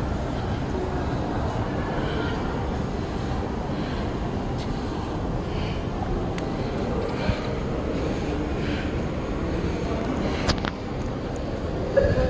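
Steady shopping-mall background noise: a low rumble with faint distant voices. A sharp click comes about ten and a half seconds in.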